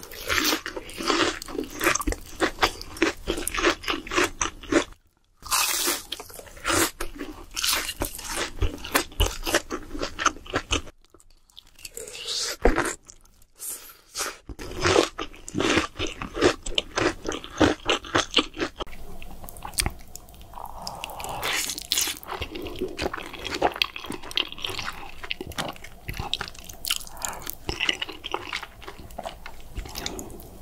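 Close-miked crunching bites and chewing of crispy breaded fried shrimp: rapid crackling crunches broken by two short pauses. About two-thirds of the way through, the crunching gives way to softer chewing.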